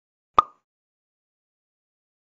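A single short, sharp pop about half a second in.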